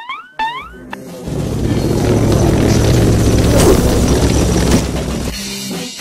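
Edited-in comic sound effects and music: quick rising whistle-like glides, then from about a second in a loud, dense music sting lasting about four seconds that drops away near the end.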